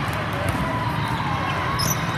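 Din of a large indoor volleyball tournament hall: voices and play from many courts at once, with shoe squeaks on the court and ball contacts. A brief high squeak comes near the end.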